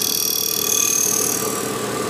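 Abrasive Machine Tool Co. Model 3B surface grinder's 12-inch wheel grinding steel, a steady grinding hiss over a constant machine hum.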